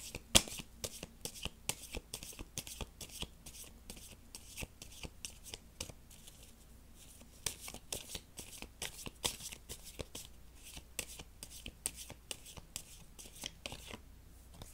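Tarot cards being shuffled by hand: a steady run of quick, crisp card slaps and flutters.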